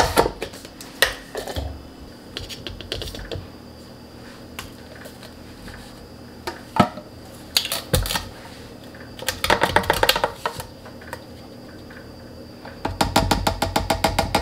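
A plastic supplement tub having its lid twisted off and being knocked against a clear plastic canister, with scattered sharp clicks and knocks. Then powder runs from the upturned tub into the canister, heard as two stretches of rapid clicking, one midway and one near the end.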